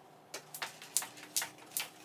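Jump rope slapping a hardwood floor in a steady rhythm: a run of about five sharp clicks, a little over two a second.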